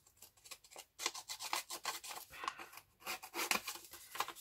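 A small handheld edge-distressing tool scraping along an edge in quick repeated strokes to rough it up, sparse at first and then faster from about a second in.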